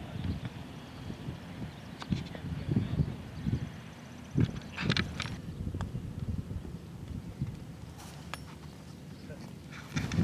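Low outdoor rumble with faint voices, broken by a few short sharp clicks of golf clubs striking balls on short chip shots near the green.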